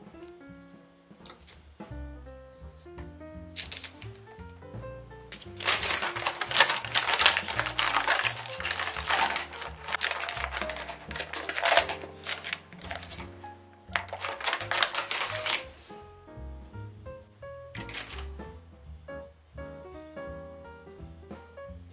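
Gentle background music with a steady run of stepping notes. From about six to twelve seconds in, and again briefly around fifteen seconds, baking parchment rustles and crinkles loudly as thin rounds of cookie dough are peeled off it.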